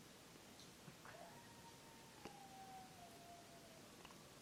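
Near silence: room tone, with a faint thin tone that slides slowly down in pitch for about two and a half seconds, and a couple of faint clicks.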